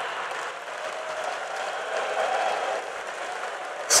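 Audience applauding steadily, with faint crowd voices mixed in around the middle.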